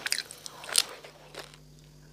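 Close-miked bites and crunches of roasted meat and crisp skin, sharp and crackly, the loudest bite near the end of the first second. After that it drops to a quiet steady low hum with a faint click.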